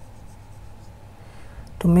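Felt-tip marker drawing lines on a white board, faint strokes of the tip across the surface. A man starts speaking near the end.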